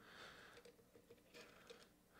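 Near silence, with a few faint ticks as an ink cartridge is pushed into a fountain pen's grip section.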